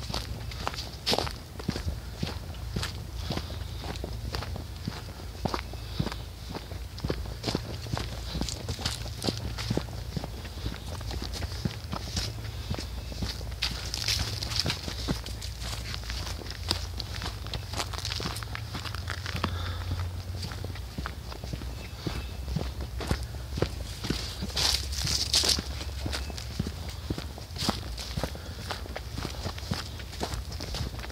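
Footsteps walking along a dirt trail covered in dry leaves, the leaves crunching and crackling underfoot at walking pace, over a steady low rumble.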